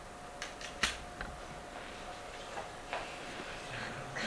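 Still-camera shutter clicking a few times at irregular intervals, the loudest click a little under a second in, over a faint steady hum.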